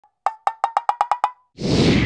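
Logo sound effect for an intro: eight short knocks on one pitch, coming slightly faster, then at about one and a half seconds a loud swelling whoosh with a deep rumble.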